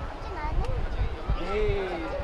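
Children's voices chattering and calling out in a crowd, including one long drawn-out high vowel in the second half, over irregular low thumps.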